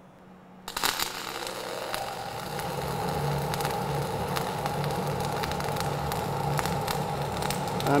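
Dual shield flux-cored arc welding with ESAB 7100 wire on vertical plate, the arc striking about a second in and then crackling steadily with frequent sharp pops.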